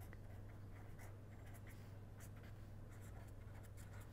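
Faint scratching of a pen writing on paper in short strokes, over a steady low hum.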